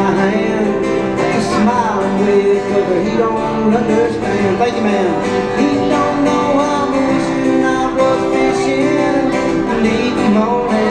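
Live country song on a strummed acoustic guitar, with a man's singing voice over it, heard through a PA.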